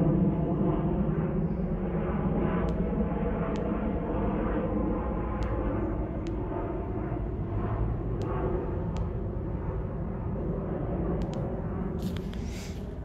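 Steady low rumble of outdoor night-time background noise, with a few faint, sharp clicks scattered through it.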